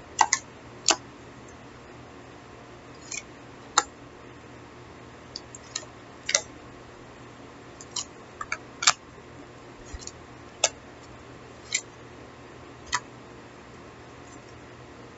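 Tarot cards being hand-shuffled: some fifteen sharp clicks and snaps at irregular intervals as the cards strike and tap against each other.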